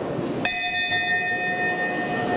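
A bell struck once about half a second in, ringing with several clear tones that fade over about a second and a half, over a steady low background hubbub.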